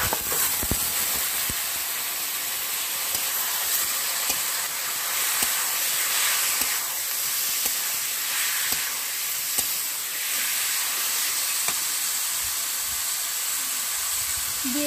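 Raw marinated chicken sizzling in hot oil and fried spice paste in an iron kadai, a steady hiss. A few sharp clicks of the metal spatula against the pan come as it is stirred.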